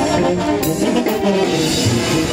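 Mexican banda music: a brass band with trombones and trumpets over steady drums, playing loudly without a break.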